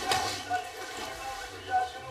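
Faint, indistinct voices over room noise.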